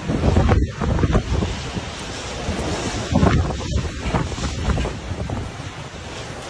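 Storm wind buffeting the microphone in gusts, loudest about half a second in and again around three seconds in.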